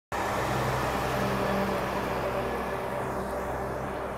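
Semi truck's diesel engine running with a steady low drone over tyre and road rumble as the tractor-trailer pulls away, the sound slowly fading.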